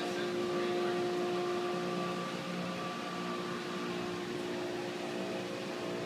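Steady mechanical hum with several fixed tones over an even hiss: a machine such as a fan or air unit running in the room.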